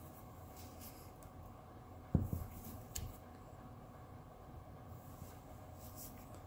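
Faint handling of a ratchet torque wrench on an engine drain bolt: a dull knock about two seconds in, then a single sharp metallic click. The bolt is still short of its set torque, so the click is not the wrench breaking over at spec.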